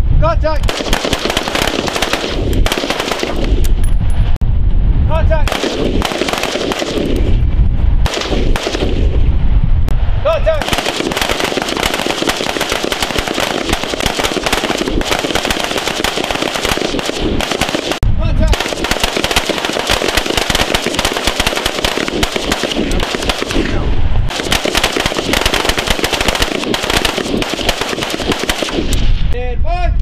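Several rifles firing on a firing line, shots from different shooters overlapping. For the first ten seconds the shots come in separate clusters; after that they run together into near-continuous firing until just before the end.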